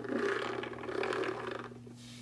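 Small plastic toy wheelchair being pushed across a hard plastic toy-house floor, its wheels scraping and rattling in two swells before stopping.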